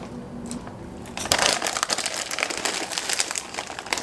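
Plastic snack bag of corn and rice puffs crinkling as it is handled, starting about a second in and running for a couple of seconds in irregular crackles.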